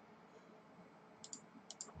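Four short, sharp computer clicks in two close pairs in the second half, as digits are entered into a sudoku grid on screen, over near-silent room tone.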